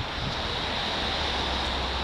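Steady rushing noise of wind on the microphone, with a low rumble of street traffic underneath.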